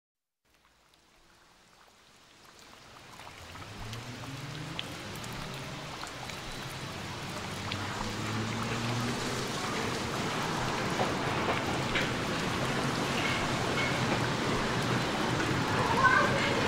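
Recorded rain sound effect fading in from silence and growing steadily louder, an even hiss of rainfall, with faint low sustained tones beneath it, as the ambient opening of a pop song's intro.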